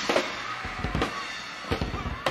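Live rock band in an arena concert recording, with scattered sharp drum hits over a dense wash of sound and no singing.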